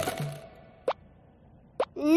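Two short, rising cartoon 'plop' sound effects about a second apart, as background music fades out.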